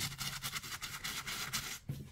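Toothbrush scrubbing soapy leather in quick back-and-forth strokes: a faint, rapid scratching.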